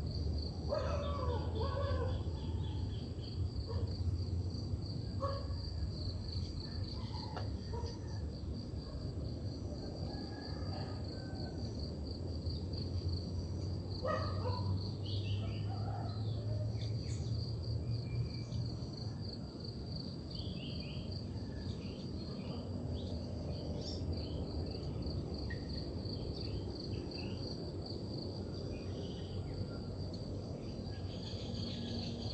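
Rural ambience: insects trill steadily at a high pitch, with scattered short bird calls and chirps over it, busiest near the start and again about halfway through. A low rumble underneath fades out a little past the middle.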